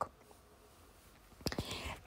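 A pause in a woman's speech: near silence for over a second, then a few soft clicks and a quick breath just before she speaks again.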